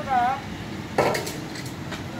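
A sharp metallic clank of cookware about a second in, with a short ring after it, like a metal ladle or pot being knocked. Steady background noise runs underneath.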